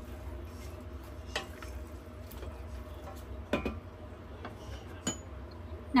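Wooden spoon stirring meat and vegetables in a stainless steel pot, with a few scattered knocks against the pot, the loudest about halfway through, over a steady low hum.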